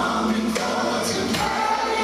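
Gospel choir of men and women singing together into microphones, with one note held steady about halfway through.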